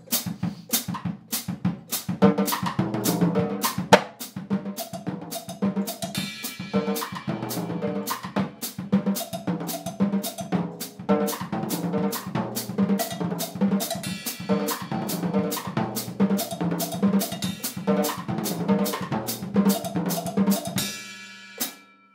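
Acoustic drum kit played in a samba groove: an ostinato between the bass drum and the foot hi-hat, under thirteen-stroke rolls (paired double strokes closing on a single stroke) moved around the snare and toms. The playing stops abruptly about a second before the end.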